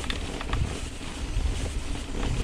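Mountain bike rolling along a grassy track: tyre rumble mixed with wind noise on the microphone, with a few light clicks and rattles from the bike.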